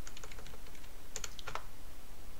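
Computer keyboard keys tapped in a quick run of light clicks, with a few sharper presses past the middle: keystrokes stepping through a boot menu to pick a language.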